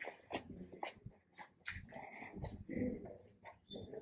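Footsteps on stone paving, a quick irregular run of short scuffs and taps, with a faint low sound, perhaps a voice, about two and a half seconds in.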